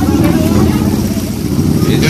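Several high-powered motorcycle engines running steadily together in a dense low rumble, with people talking over them.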